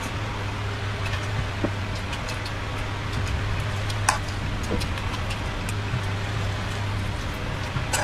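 Chewing of raw broccoli florets, heard as a few short, crisp crunches, the sharpest about four seconds in. Under them runs a steady hiss with a low hum.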